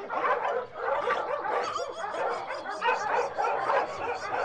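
A chorus of barking: many short barks and yips overlapping one another without a break.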